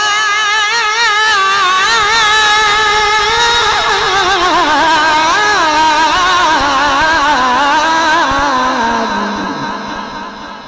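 A man's voice chanting Quranic recitation (tilawat) into a microphone, holding one long melismatic phrase with a wavering, ornamented pitch. The phrase slides downward over its second half and fades away near the end.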